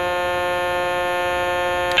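Stylophone pocket synthesizer holding one steady note, its stylus pressed on a single key, in the original tone setting. Right at the end a click as the tone switch moves to setting two, and the note turns louder and more metallic.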